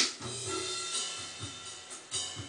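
Korg M50 keyboard's pre-programmed acoustic drum kit beat playing: a sharp hit at the start, then a cymbal ringing on with a few kick drum thumps under it.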